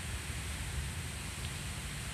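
Steady outdoor background noise: an even hiss with a fluctuating low rumble, and no distinct event.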